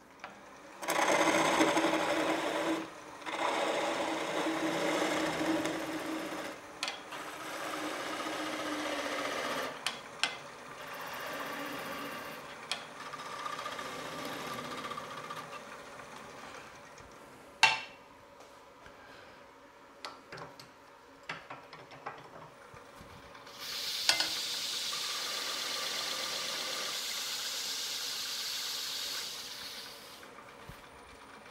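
A turning tool cutting the spinning London plane wood on a lathe, thinning the narrow neck where the piece meets the chuck. The cuts come in stretches, with a sharp click about 18 seconds in, and a louder, hissier cut over the last six seconds that stops just before the end.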